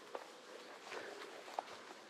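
Faint footsteps through grass and brush, with a few irregular soft snaps and crunches.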